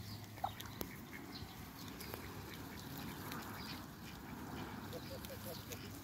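Muscovy ducks grazing, giving a short run of soft little calls around five seconds in, amid scattered faint chirps. Two sharp clicks, the first the loudest sound, come about half a second and just under a second in.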